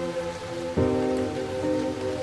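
Slow, soft piano music over a steady recorded rain sound. A new chord is struck just under a second in and its notes are held.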